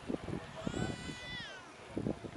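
A single high-pitched, drawn-out cry lasting about a second, held steady and then falling in pitch at its end, over a low murmur of crowd voices.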